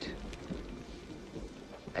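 Quiet background ambience between lines of dialogue: a low rumble under a faint, even hiss, with a few faint ticks.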